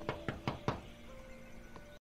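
Knocking on a house's front door: a quick run of about four knocks that stops under a second in, over soft background music.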